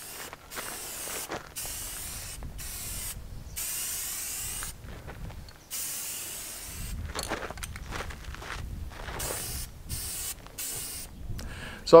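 Aerosol spray-paint can spraying paint in a run of short bursts with brief pauses between them.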